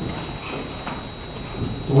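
A few soft knocks of footsteps on a hard floor as a man gets up and steps away from a lectern, over steady room noise.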